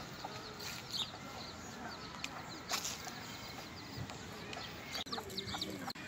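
A hen clucking quietly, with short high bird chirps scattered through.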